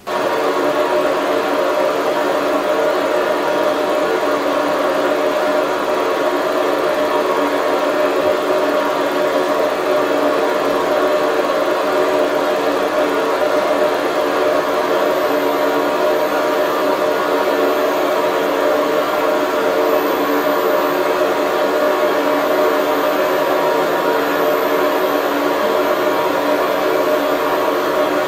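A steady drone of several held tones, played over loudspeakers; it cuts in and cuts off abruptly.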